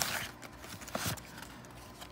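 Cardboard trading-card box being opened by hand: a short scraping rustle as the flap comes open, then a few light taps and knocks.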